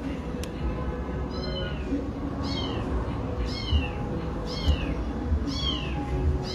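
A high, falling, mew-like animal call repeated evenly about once a second over background music with a low beat.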